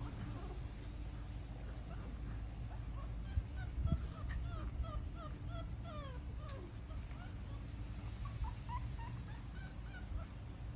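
Shih Tzu puppies squeaking and whimpering in a run of short, high, falling squeaks, busiest in the middle, over a steady low hum. A single thump sounds about four seconds in.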